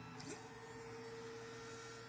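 Creality CR-10S stepper motors driving the print head to the next bed-levelling point: a faint whine that glides up in pitch as the move starts, then holds one steady note.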